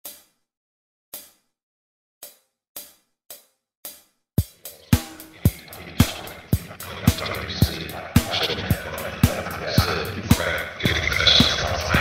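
An 80s disco-style drum machine track at 110 beats per minute. It opens with single sharp clicks, two slow then four on the beat like a count-in, and about four and a half seconds in a kick drum enters on every beat under a busier layer of cymbals and other sounds that gets louder toward the end.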